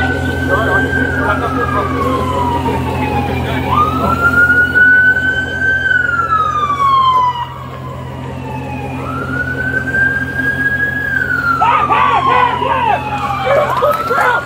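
Emergency siren in wail mode: the pitch jumps up quickly, then sinks slowly over about five seconds, repeating about three times over a steady low hum.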